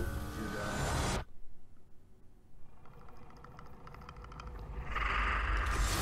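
Film trailer soundtrack playing: a loud noisy sound cuts off abruptly about a second in, then after a quiet stretch a rapid, even ticking builds into a loud burst near the end.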